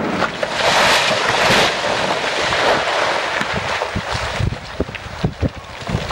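Rock blasting on a cliff face: a loud rush of rumbling noise after the explosive charge, then many irregular thuds and knocks of rock and debris coming down the slope.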